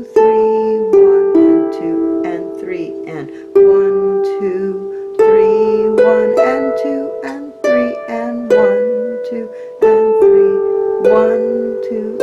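Lever harp playing a slow waltz melody in E minor in three-time, notes plucked one after another, each starting sharply and ringing on as it fades, with lower notes sounding under the tune.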